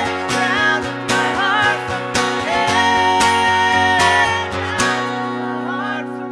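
Acoustic guitar strummed under long held sung notes. The last strum comes near the end and the chord rings on.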